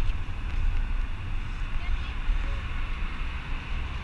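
Steady low rumble of street traffic, with faint voices in the background.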